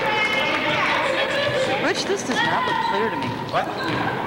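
Busy school-gym sound during a youth basketball game: overlapping voices of players and spectators, with players' running footsteps and a basketball bouncing on the court, a couple of sharper thuds standing out.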